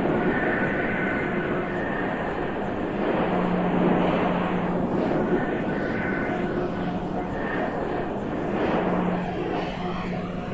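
Ambient drone music built from processed field recordings of a car assembly plant: a dense, steady rushing drone with a low hum that swells in and out every few seconds and faint higher tones above it.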